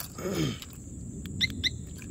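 Motorcycle alarm giving two short high beeps about a quarter second apart as it is disarmed with the key fob. Shortly before them, a brief low sound falling in pitch.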